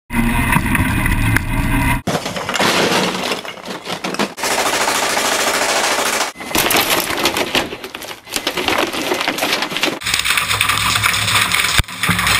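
Rapid-fire shooting and breaking glass, in a run of short clips that cut off abruptly every couple of seconds, with paintballs striking a target and a window pane shattering.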